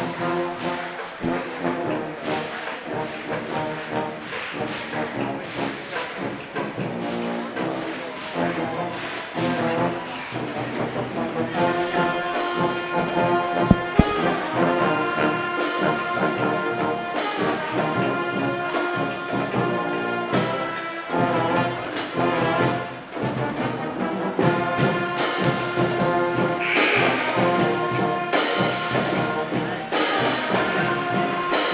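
School band playing a brass-led tune over a steady drumbeat. The band gets brighter and a little louder about twelve seconds in.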